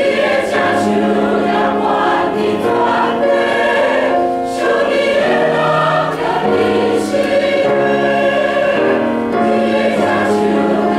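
Mixed church choir of men's and women's voices singing a hymn in parts, holding long chords that move from note to note, with brief breaths between phrases.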